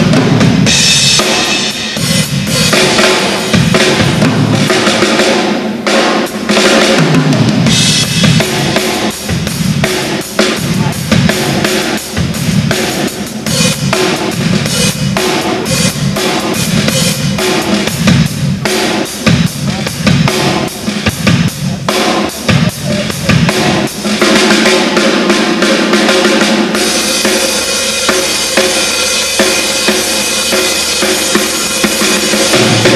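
Tama drum kit with double bass drums played as a drum medley of parts from different songs: a dense run of bass drum, snare, toms and cymbals. Near the end the low drums thin out and the cymbals get thicker.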